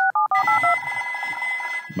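Telephone sound effect: a quick run of short two-tone keypad beeps as a number is dialled, then a steady electronic ring lasting about a second and a half.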